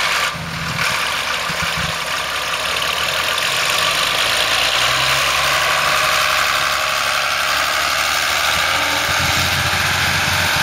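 Ford 7810 tractor's diesel engine running steadily as it tows a bale wrapper across a field.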